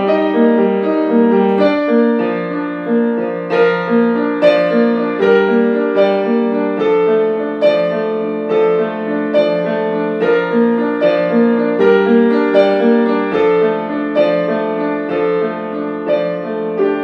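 Grand piano playing a minimalist solo piece: a repeating broken-chord figure with notes struck about twice a second over a held low bass note.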